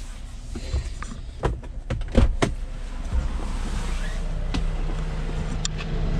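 A few sharp knocks and clicks of someone climbing out of a car's cabin through an open door, then a steady rushing noise with a low hum joining near the end.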